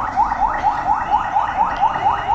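An electronic alarm chirping rapidly: a short rising tone repeated about five times a second, steady in rhythm and pitch.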